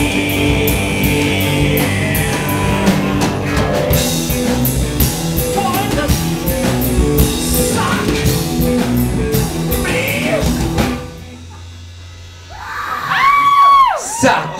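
Live rock band playing: drums, keyboard and guitar, with a singer shouting over it. The music stops suddenly about eleven seconds in, leaving a held low note, and a voice calls out with rising and falling pitch near the end.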